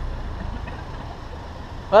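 Car engine idling while the car stands still, a low steady rumble.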